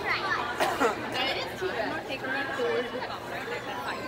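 Chatter of several people talking, with no clear words.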